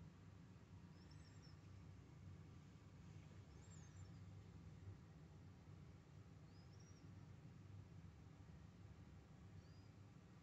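Near silence: room tone with a low steady hum, and four faint, short, high-pitched chirps about three seconds apart.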